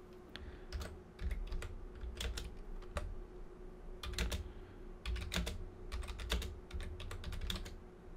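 Typing on a computer keyboard: irregular clusters of keystroke clicks with short pauses between them.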